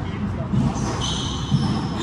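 Squash rally on a hardwood court: two sharp hits of the ball about a second apart, with high-pitched squeaks of sneakers on the wooden floor, all echoing in the enclosed court.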